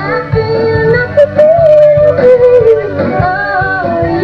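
Live rock band playing: a woman singing long, sliding notes over electric guitars, bass guitar and drums.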